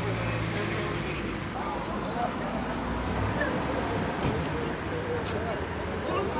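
Steady road traffic rumble with a vehicle engine running nearby, and faint distant voices.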